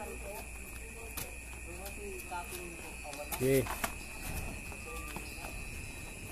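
Voices at a backyard boxing bout: faint chatter, then a man calling "oke" about three and a half seconds in. A few sharp knocks and a steady high-pitched tone run under the voices.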